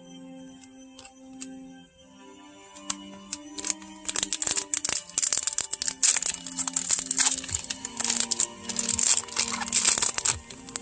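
Foil booster-pack wrapper crinkling loudly as it is handled and torn open, starting about three to four seconds in, over soft background music with a slow melody.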